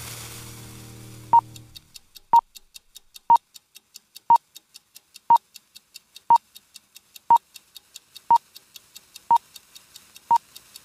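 Film-leader countdown sound effect: a short, high, single-pitch beep once a second, nine times, starting about a second and a half in, over a faint steady ticking about four times a second. A hiss and low sustained chord fade out in the first second and a half.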